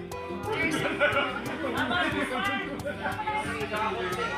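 Several people talking over one another in a lively group conversation, with music playing in the background.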